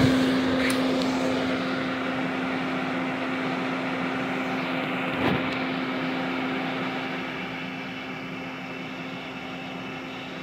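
Everlast 256si inverter welder just switched on and running, its cooling fan and electronics giving a steady hum that slowly gets quieter. There is a faint click under a second in and a short knock about five seconds in.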